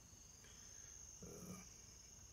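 Faint, steady high-pitched chorus of crickets.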